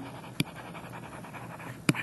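Stylus writing on a tablet: faint scratching with two short taps about a second and a half apart, over soft breathing close to the microphone.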